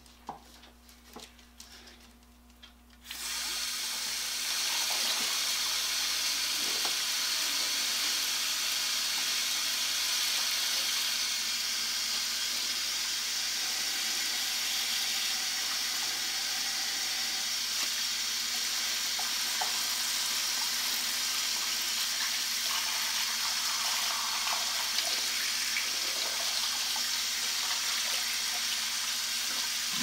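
Water from a garden hose running into a plastic-lined tank. It starts suddenly about three seconds in and then runs steadily. The flow is stirring baking soda into an electrolysis bath.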